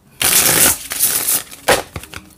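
A new tarot deck shuffled by hand: a dense flutter of cards for about a second, then one short sharp click near the end.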